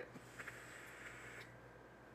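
Faint hiss of a long drag on an e-cigarette's dripping atomizer built with a single coil, stopping about one and a half seconds in.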